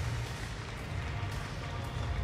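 Background music, mostly a low bass line.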